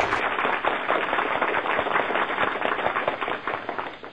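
Audience applauding, a dense patter of many hand claps that dies away toward the end.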